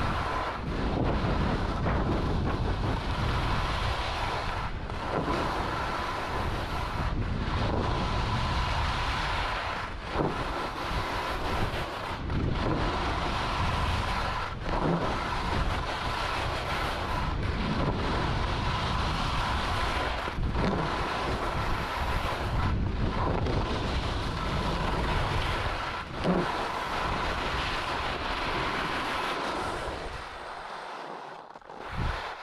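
Skis carving and scraping over groomed snow on a downhill run, with wind rushing over the microphone. The sound swells and dips with each turn, about every two to three seconds.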